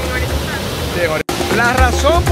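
Background music with a sung melody and a low bass beat, over a steady rushing noise from the waterfall; the sound drops out for an instant a little past halfway, at an edit.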